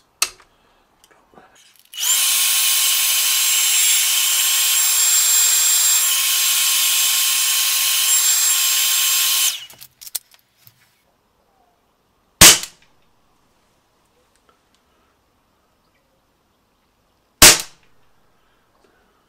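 An electric hot-air blower runs steadily for about seven seconds with a faint fixed whine, warming the pistol's CO2 to raise its shot velocity. About five seconds after it stops, a CO2 air pistol fires two sharp single shots about five seconds apart.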